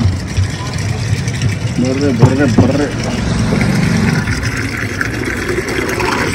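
Steady low motor hum from a street water dispenser, with water starting to run from its pipe into a plastic water jug in the later seconds.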